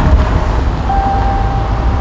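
A car's engine and tyres making a steady low rumble, with soft background music of long held notes over it.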